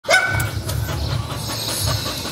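A dog gives one short, high call right at the start, over a low rumble.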